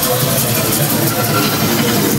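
Loud electronic music over a concert PA: a dense, rumbling, machine-like texture with no pause.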